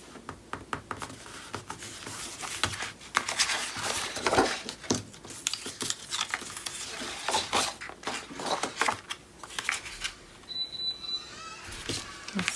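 Sheets of cardstock and paper being handled on a cutting mat: a busy run of crisp rustles, slides and light clicks as pieces are picked up, shifted and laid down. A brief thin high tone sounds near the end.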